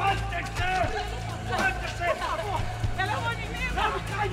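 Women crying out and wailing in distress, short high-pitched cries one after another, over a dramatic music score with a steady low drone.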